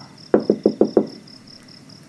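About six quick wooden knocks in under a second, each with a brief pitched ring, like a wooden stick striking a hollow block.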